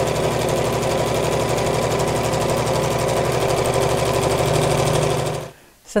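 Computerised domestic sewing machine running at a steady speed, its needle making rapid, even strokes as it quilts a line through fabric and wadding with a lengthened 3 mm stitch. The sound cuts off suddenly near the end.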